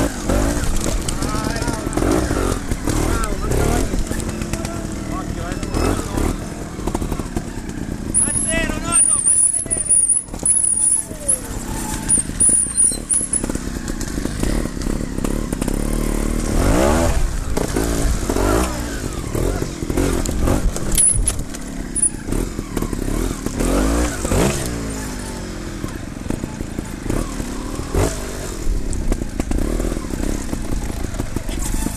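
A trials motorcycle engine running close to the rider, blipped and revved in repeated short bursts that rise and fall in pitch as the bike is worked over rocks and steps. A thin high squeal sounds for several seconds about a third of the way in.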